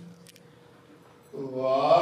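A man chanting a hymn. A long held note dies away, there is a short hush, then about one and a half seconds in his voice comes back, sliding up in pitch and swelling.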